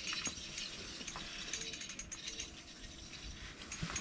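Small ice-fishing reel being cranked to bring in a hooked crappie, giving a faint, quick run of light mechanical clicks.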